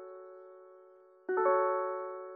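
Slow keyboard chords in an instrumental funk beat: a held chord fades away, then a new chord is struck a little past halfway and rings on.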